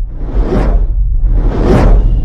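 Sound effects for an animated logo: two whooshes that swell and fade, about half a second in and again near the end, over a deep steady rumble.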